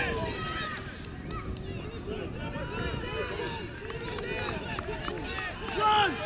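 Several voices at a rugby match shouting and calling out across the field, overlapping one another, with a louder shout near the end.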